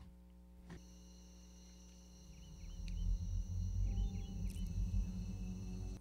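Film soundtrack ambience: a steady, high, cricket-like chirring with a few short chirps, joined about two and a half seconds in by a low drone that stays to the end.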